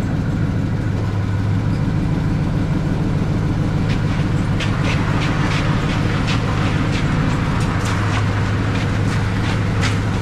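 A vehicle engine idling steadily with a low hum, with scattered light clicks and knocks from about four seconds in as the riding mower's seat and parts are handled.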